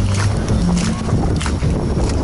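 Dance music with a bass line and a steady beat, recorded outdoors with some low rumble under it.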